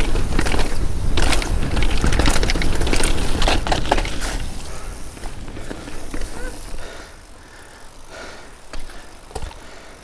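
Devinci Wilson downhill mountain bike ridden fast down a dirt trail: a rush of wind and tyre noise with sharp rattling clicks from the bike over the rough ground. It grows much quieter about halfway through as the bike slows and rolls out onto smooth pavement.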